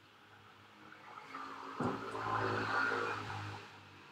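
A motor vehicle passing, its engine hum swelling and fading over about two and a half seconds, with a sudden knock about two seconds in.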